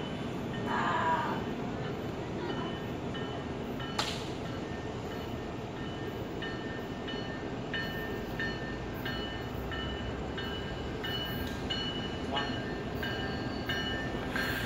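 Tri-Rail commuter train approaching from a distance: a steady low rumble, with faint short tones repeating through the second half. One sharp click about four seconds in.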